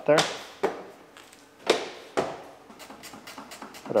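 Plastic rocker molding being snapped onto the sill of a 2012 Lexus IS250 as its push-in clips seat. There are a few sharp plastic snaps and knocks, the loudest right at the start and about one and three-quarter seconds in, followed by fainter small clicks.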